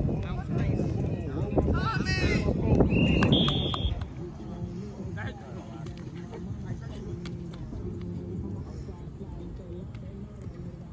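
Players shouting on the field, then two short referee whistle blasts a little after three seconds in, the second higher in pitch. The shouting dies down after about four seconds, leaving faint distant voices.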